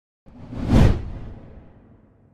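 Whoosh transition sound effect with a low rumble underneath, swelling to a peak a little under a second in and then fading away.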